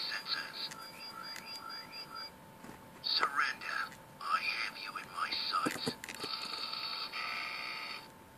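Tinny, electronically processed voice and sound effects from the Star Wars Boba Fett electronic talking helmet's small speaker: short bursts of altered voice through the middle, and a steady electronic buzz over the last two seconds.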